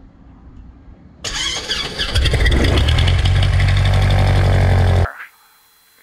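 A small Cessna trainer's piston engine starting: the starter cranks briefly from just over a second in, then the engine catches about two seconds in and runs loud and steady with the propeller turning, heard from outside the aircraft. The sound cuts off suddenly about five seconds in.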